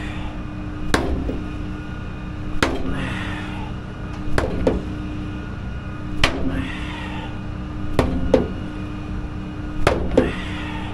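Hammer blows on a tire skate wedged under the front wheel: sharp strikes about every one and a half to two seconds, some in quick pairs, over a steady low hum.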